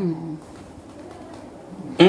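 A man's drawn-out vocal note trailing off, followed by a short pause of quiet studio room tone with a faint murmur.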